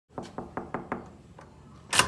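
Knuckles knocking on a dorm-room door: five quick, evenly spaced raps, about five a second. A louder clunk follows right at the end.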